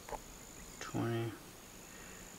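An insect's steady, high-pitched trill outdoors breaks off just before a second in and starts again about half a second later. About a second in, a man gives a short low hum, which is the loudest sound.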